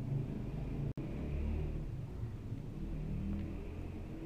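Low, steady rumbling background noise with no speech, broken by a momentary dropout about a second in.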